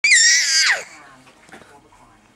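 A baby's single very high-pitched squeal, under a second long, dropping sharply in pitch as it trails off.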